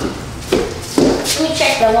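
Two short knocks about half a second apart, then a child's brief voice near the end.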